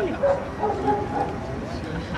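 A dog yipping and whining among people talking.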